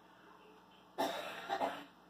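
A person coughing: a sudden cough about a second in, in two quick bursts, over a quiet room background.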